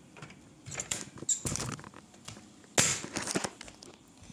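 Handling noise close to the microphone: scattered rustles and soft knocks, the loudest about three-quarters of the way in.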